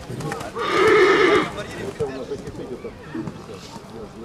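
A horse whinnies once, loudly, for about a second with a wavering pitch.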